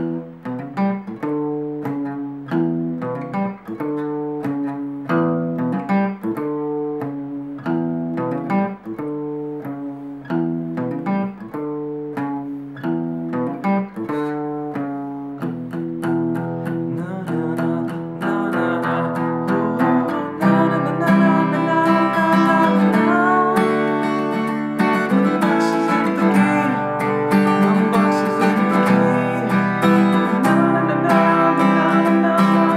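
Fender CD60E steel-string acoustic guitar playing a picked single-note riff, then strummed chords from about halfway through, growing louder near the end.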